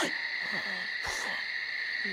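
Night-time ambience sound effect: a steady high insect trill, like crickets, running without a break, with a hushed voice at the start.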